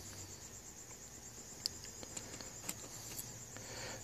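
A few faint clicks of a small screwdriver working a screw loose on the metal dial-lamp bracket of a Yamaha CR-2020 receiver. A steady faint high-pitched tone runs under them.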